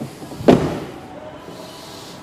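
Rear door of an Alfa Romeo 159 wagon shut with a single thud about half a second in.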